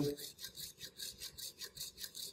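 Hacksaw cutting through PVC pipe: quick back-and-forth rasping strokes, about four to five a second.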